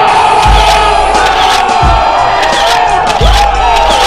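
Several men shouting one long, drawn-out "Ooouuggh" together, over music with a heavy low beat about every second and a half.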